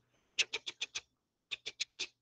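A man's quiet, breathy laugh in quick short pulses: a run of five, a short pause, then three more.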